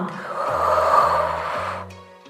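A woman's long audible exhale, breathing out for about a second and a half and fading near the end, over steady background music.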